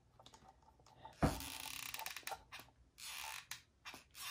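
A squeaky hot glue gun being squeezed: its trigger mechanism clicks sharply about a second in, then creaks and scrapes as glue is fed, with a second short stretch of creaking near the end.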